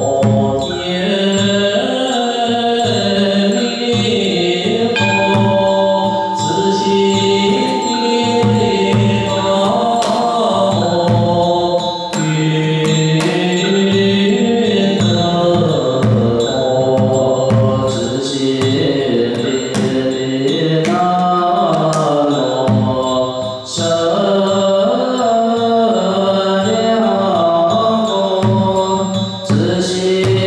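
A monastic assembly chants a Buddhist liturgy in unison in long, sustained tones. A Chinese temple drum beaten with two wooden sticks, along with small percussion, keeps a regular beat under the voices.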